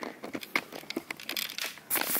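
A run of small crinkling, rustling crackles, with a louder rustle near the end.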